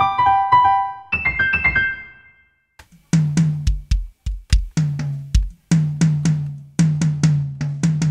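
Sampled software piano played from a MIDI keyboard, a short run of notes for about two seconds. After a brief gap, drum-kit samples are triggered from the keyboard's pads: first a few deep hits, then a steady run of drum hits, about two to three a second.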